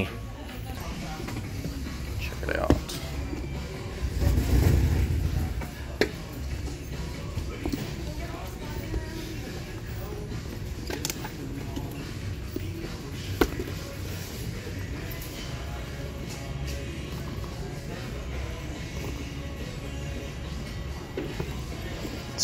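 Shop background music playing under a steady low hum, with a few sharp clicks from handling and a louder low rumble lasting about a second and a half, about four seconds in.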